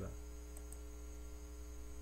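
Steady electrical mains hum with a faint hiss underneath, carried on the recording.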